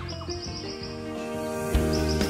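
Background music with sustained notes, over which a bird gives a rapid run of high chirps in the first second and another short run near the end.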